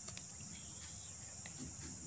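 Insects trilling, one steady high-pitched sound that does not break, with a couple of faint clicks right at the start.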